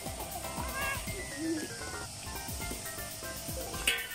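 Background music: a song with a sung vocal over a beat.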